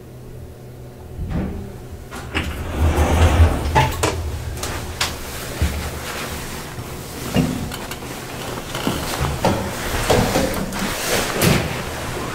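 1973 Kone Asea Graham traction elevator arriving at a floor: the car's low hum, a clunk about a second in, then its sliding doors opening, rumbling along with a string of clunks and rattles from the door mechanism.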